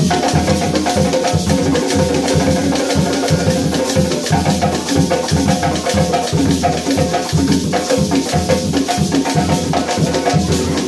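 Hand drums played with bare hands in a fast, steady rhythm, with hand clapping alongside.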